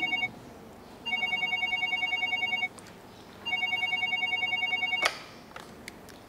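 Telephone ringing with a rapid electronic trill: two rings of about a second and a half each, the first about a second in. About five seconds in a sharp click cuts the ringing off as the handset is picked up.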